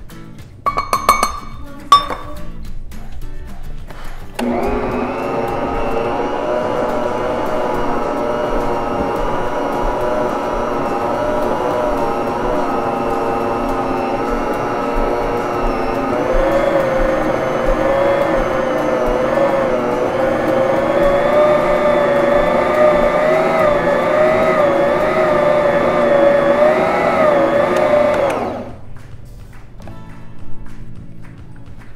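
Electric stand mixer working stiff bread dough with its dough hook: the motor starts about four seconds in and runs steadily with a whine, its pitch dipping and wavering slightly under the load, then stops shortly before the end. A couple of metal clinks come first, as the metal measuring cup of flour is emptied over the bowl.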